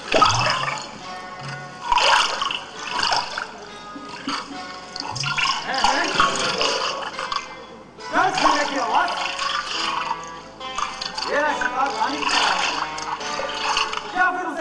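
Stage music played through the theatre's sound system, with a voice sounding over it and the sound of running water beneath.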